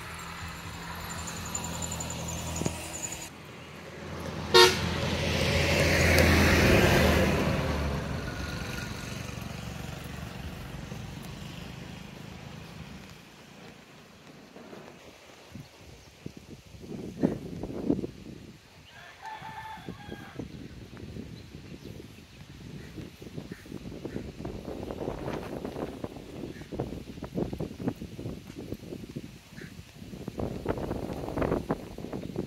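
A road vehicle passing close by, its engine hum swelling over a few seconds and then fading away, with one sharp knock as it approaches. Later there is a short pitched call, and the rustle of wind on the microphone.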